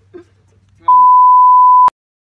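A loud, steady, high edited-in bleep tone lasting about a second, starting just before halfway through and cutting off sharply, the kind laid over speech to censor a word. Faint talk comes just before it.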